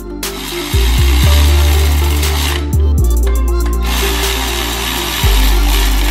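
Cordless electric ratchet running in two long bursts, a couple of seconds each with a short pause between, driving the exhaust header nuts on the engine. Background music with a steady bass line plays throughout.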